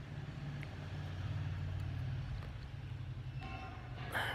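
Steady low background hum with no distinct event, and a brief faint pitched sound near the end.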